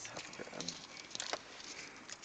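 Faint, scattered crinkling and rustling of a small chocolate's wrapper being unwrapped by hand.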